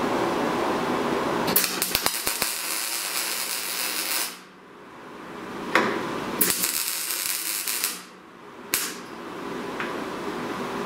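MIG welder tacking a steel gusset onto a roll cage tube: two bursts of arc crackle with sudden starts and stops, the first about two and a half seconds long starting a second and a half in, the second shorter about six and a half seconds in.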